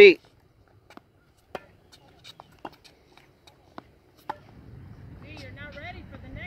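Tennis balls being struck and bouncing on a hard court: about six short, sharp knocks at irregular intervals, faint against an otherwise near-silent background.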